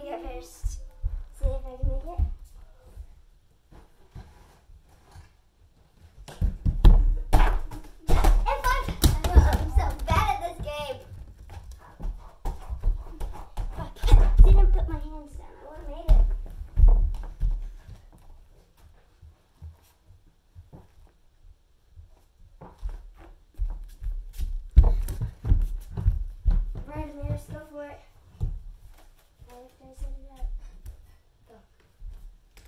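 Clusters of thumps from a child moving and landing on a gymnastics floor mat, with short bursts of her wordless vocalizing.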